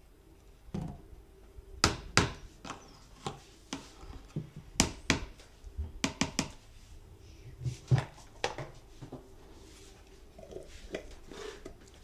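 Irregular sharp knocks and taps of kitchen containers and utensils being handled on a tabletop, about a dozen, the loudest a couple of seconds in and again near the middle, thinning out toward the end.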